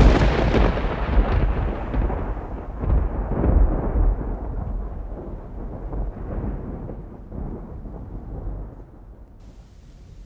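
A sudden loud crash that rolls on as a deep rumble with several swells, fading away over about nine seconds.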